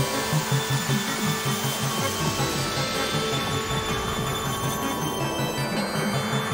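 Berlin-school electronic music played on synthesizers: a quick sequenced bass pattern repeating about five notes a second under held pad tones. A hissing, noisy filter sweep fades down and swells up again near the end.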